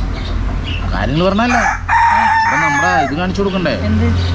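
A rooster crows once, a single harsh call of about a second, beginning about two seconds in, over people talking.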